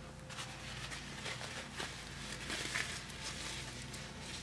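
Disposable diaper rustling and crinkling in quick, irregular scratches as it is fitted and its tabs are fastened.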